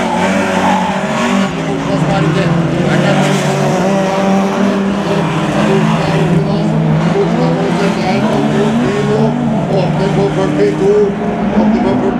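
Rallycross race cars running flat out together through a dusty bend, engines revving up and down with gear changes.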